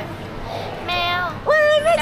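A girl's high-pitched voice in a drawn-out, sing-song exclamation: a softer call about a second in, then a louder, longer one near the end.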